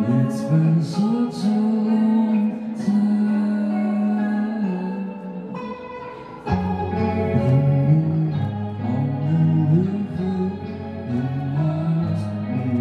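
A man singing live to his own electric guitar. About halfway through, a low held note comes in and the music gets louder.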